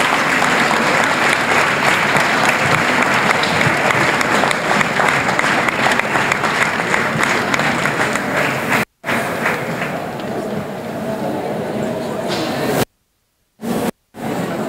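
Audience applauding in a large hall, a dense clapping that eases somewhat after about nine seconds. It is broken by two short silent gaps, about nine seconds in and near the end.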